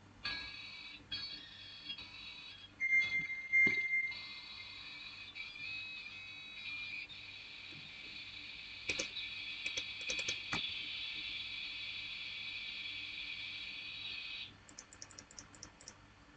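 Dial-up modem handshake as two modems negotiate a connection. It opens with a run of short tones, then a steady high answer tone about three seconds in, then a long hiss of line training with a few clicks, which cuts off at about fourteen and a half seconds.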